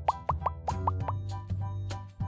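A rapid run of short, rising cartoon-style pop sound effects, about six a second, thinning out about halfway, over background music with a steady bass.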